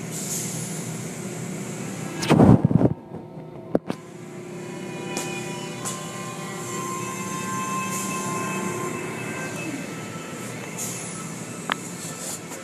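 Automatic tunnel car wash heard from inside the car: water spraying on the body and glass, with the wash machinery running in a steady hum. About two and a half seconds in there is one loud, short burst, then a sharp click.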